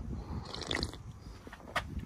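Faint sounds of an aluminium beer can being opened, with a single sharp click near the end.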